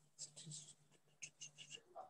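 Near silence: room tone with a faint steady low hum and a few faint, short scratchy sounds.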